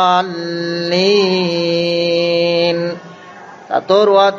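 A voice reciting the Quran in a melodic tajwid chant, drawing one vowel out into a long held note of nearly three seconds, a prolonged madd, with a slight lift in pitch about a second in. Short chanted syllables return near the end.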